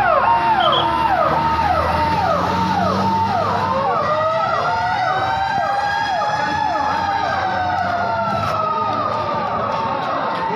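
Fire engine siren repeating a fast falling sweep about twice a second, joined about four seconds in by a second siren's slow wail that rises and then falls away.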